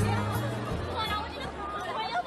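Pop song with a steady bass line that drops out a little under a second in, leaving a crowd of people chattering.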